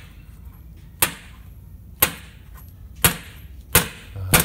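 Four sharp metallic knocks, roughly a second apart, each ringing briefly.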